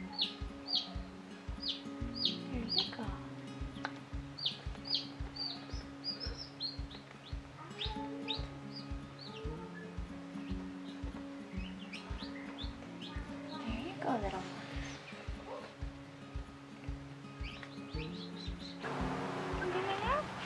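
Background music with a steady beat over the high, downward-sliding peeps of newly hatched chicks. The peeps come in quick runs during the first half and return now and then later.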